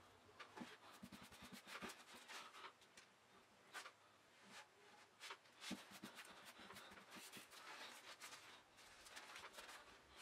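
Faint rustling and light taps of tissue paper being handled and pressed flat by hand on a tabletop, with near silence between the scattered small clicks.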